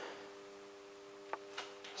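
A faint, steady hum of several tones, with one sharp click about a second and a half in and a softer tick just after.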